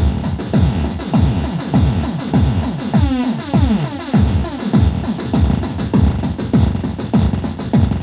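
A Korg Electribe EMX-1 plays a looping electronic drum pattern of synthesized drum hits, each falling in pitch, in a rapid run while its drum sounds are reshaped live. The pattern is roughened by distortion, with the unit's tubes adding warmth. About three seconds in, a quick flurry of descending pitch sweeps plays.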